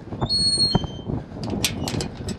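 Handling noises as a takeaway order is passed over: rustling of packaging with a couple of sharp knocks, a brief high squeak early on and a quick run of crisp rustles near the end.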